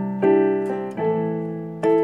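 Piano playing slow chords: a new chord is struck about every 0.8 seconds and left to ring and fade.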